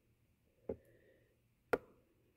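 Two short, sharp clicks about a second apart from handling the plastic auto-darkening welding helmet.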